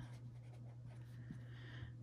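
Marker pen writing on paper: faint scratching strokes as letters are written.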